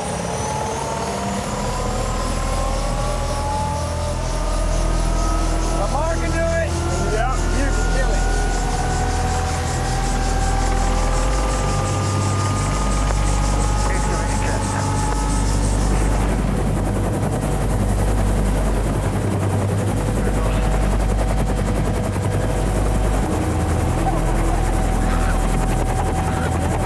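Helicopter heard from inside its open-door cabin: a turbine whine climbing steadily in pitch over the first half as the engine spools up for take-off, over the steady low beat of the rotor blades.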